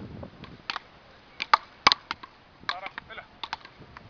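Wooden beach-racket paddles striking a small rubber ball in a fast rally: a quick, irregular string of sharp knocks, the loudest about two seconds in.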